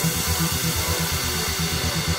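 Background music with a steady, quick beat.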